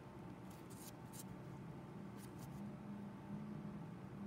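Faint steady low hum with a thin higher tone, and a few brief soft scratchy clicks, about half a second to a second in and again just after two seconds: small handling sounds during a close skin treatment.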